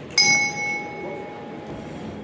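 Boxing ring bell struck once to start the round, ringing out and fading over about a second and a half.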